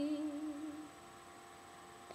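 A woman's unaccompanied sung note, held with a slight waver and fading out a little before a second in, followed by a faint steady hum.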